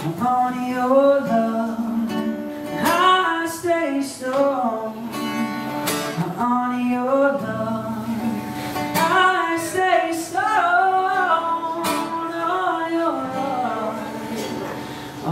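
A man singing with long held, bending notes over an acoustic guitar, played live.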